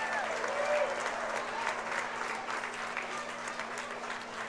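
Small crowd applauding, many hands clapping together, slowly thinning out toward the end.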